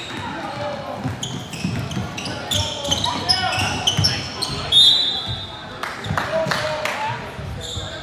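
Basketball players' sneakers squeaking on a hardwood gym floor in short, high chirps, the loudest a little before five seconds in, with a ball being dribbled in quick bounces near the end.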